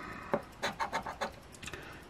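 A coin scraping the latex coating off a scratch-off lottery ticket, a quick run of short scrapes that stops about a second and a half in.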